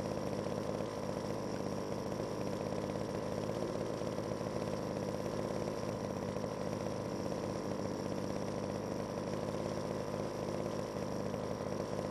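An engine running steadily, its pitch and level unchanging, cutting off suddenly at the end.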